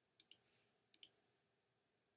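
A computer mouse button clicked twice, about three quarters of a second apart. Each click is a quick press-and-release pair, faint against near silence.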